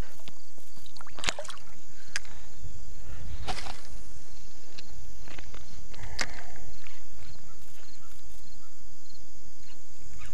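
A steady high insect chorus over a low rumble, broken by a few sharp clicks and knocks and one longer rush about three and a half seconds in. These come from handling a fish at the water and casting a spinning rod.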